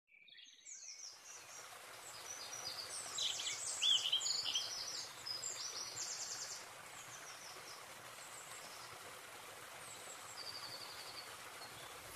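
Songbirds chirping and singing rapid trills, busiest in the first seven seconds and thinning out after, over a faint steady hiss of outdoor ambience.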